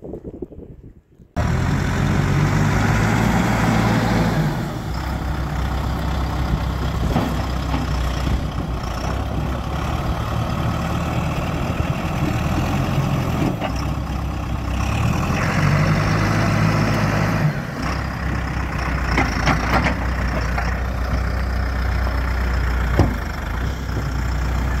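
Backhoe loader's diesel engine running at close range, cutting in suddenly about a second in. Its note rises and falls a few times as the loader works, and a sharp knock comes near the end.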